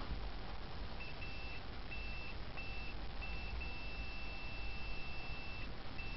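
Multimeter continuity beeper as test probes touch the ends of a copper coil: a thin high beep that comes and goes in several short beeps from about a second in, then holds steady for about two seconds. The broken beeps are the probes making and losing contact; the steady tone is an unbroken circuit through the coil.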